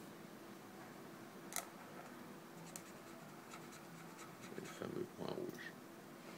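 Felt-tip marker drawing on paper: faint scratching strokes of the tip, growing louder about four and a half seconds in for a second of strokes, with a sharp click about a second and a half in and a faint steady hum underneath.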